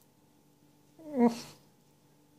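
A domestic cat gives one short meow about a second in, falling in pitch at the end.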